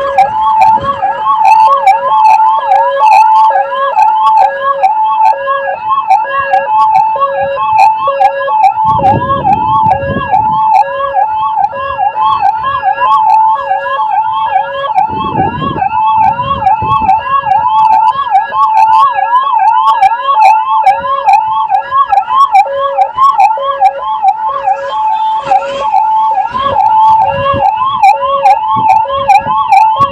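Electronic ambulance siren sounding continuously and loudly, a fast repeating up-and-down yelp over a steady alternating two-note tone. A few short low rumbles come about a third of the way in, around the middle, and near the end.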